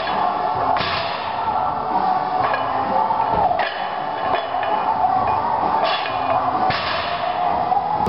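A 120 lb barbell with rubber-coated plates being power cleaned rep after rep, giving a thud each time the bar comes back down, about five times, over steady background music.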